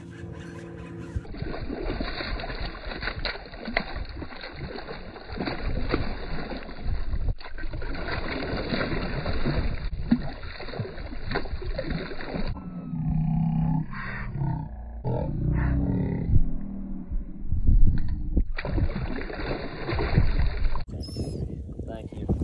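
Wind buffeting a phone microphone over choppy water. Near the middle, a hooked largemouth bass splashes and thrashes at the surface beside the boat.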